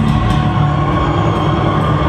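Live gothic-metal band playing loud through the PA: a dense, sustained, droning wall of distorted sound over a steady low bass note.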